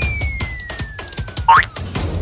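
Upbeat background music with a quick percussive beat, overlaid with cartoon comedy sound effects. A thin whistle tone slides slowly down in pitch, and a short springy boing-like effect rises sharply about one and a half seconds in.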